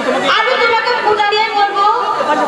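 A woman's voice amplified through a hand-held microphone, in long, drawn-out pitched phrases.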